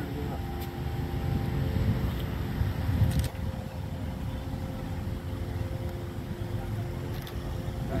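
A steady low rumble with a faint continuous hum, typical of a motor vehicle engine running nearby, and a brief knock about three seconds in.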